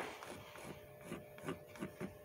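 A white pencil scratching across black paper in short drawing strokes: a sharp stroke at the start, then several more from about a second in, over a faint steady hum.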